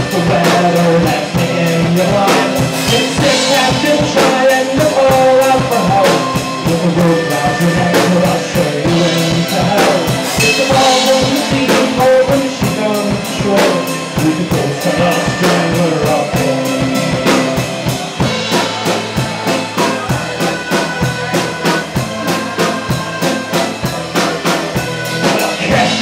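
Live band playing an instrumental passage: a diatonic button accordion, a strummed acoustic guitar and a drum kit keeping a fast, steady beat.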